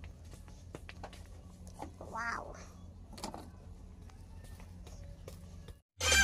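Faint shop room tone: a steady low hum with a few soft clicks, and about two seconds in a brief high-pitched wavering cry, with a fainter one a second later. The sound cuts out just before the end.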